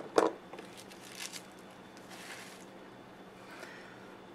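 Art crayons in plastic packaging being handled. There is a sharp click right at the start, a few faint ticks, then a brief soft rustle about two seconds in.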